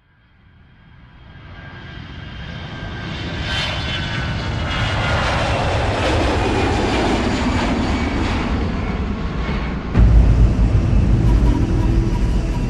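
Jet airliner engine noise fading in from silence and swelling to a loud, steady rush with faint sweeping tones. About two seconds before the end it cuts abruptly to a louder, deeper rumble.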